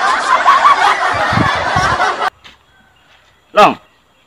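Canned audience laughter, many voices laughing together, cutting off abruptly a little over two seconds in.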